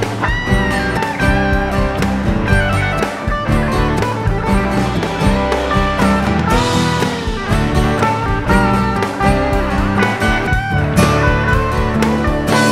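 Yamaha FG800VN solid spruce-top dreadnought acoustic guitar strummed inside a full band mix, with a steady beat, bass and a lead line with bent notes near the start and again near the end.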